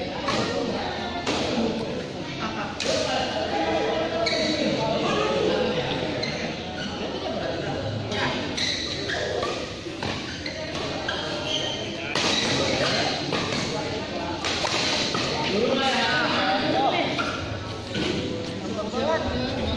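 Doubles badminton rally: racket strikes on the shuttlecock come at irregular intervals, over people talking in the background.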